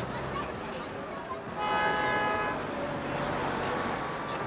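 A car horn honks once, a steady toot of about a second that starts partway through, over street traffic and the chatter of passers-by.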